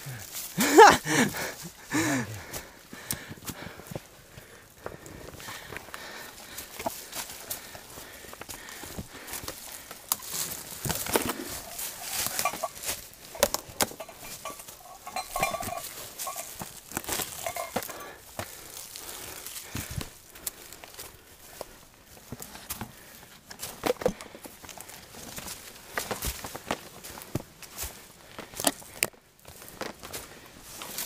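Footsteps of hikers on a rough forest trail with rustling and snapping of brush, in irregular uneven steps. A brief voice sounds at the very start.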